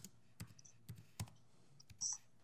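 A handful of soft, separate clicks from a laptop being operated, set over near-silent room tone.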